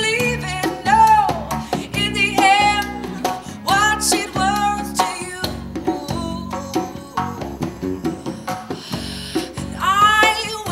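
Live band music: a woman singing long, sliding notes over strummed guitar, bass guitar and a hand drum keeping a steady beat.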